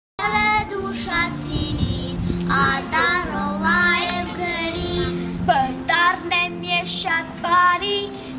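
Children singing together over recorded backing music, starting abruptly right at the beginning.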